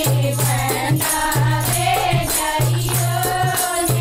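A chorus of women singing a Haryanvi folk song (lokgeet) in unison, with hand claps and a rattling percussion beat keeping a steady rhythm.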